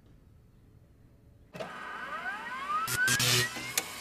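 Near silence for about a second and a half, then a short music sting starts suddenly, with a tone gliding steadily upward over about two seconds and a few sharp clicks near the end.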